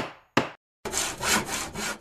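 Sound effects for an animated closing title: two short sharp hits, then a rhythmic hissing noise that swells and fades about four times over a second before cutting off.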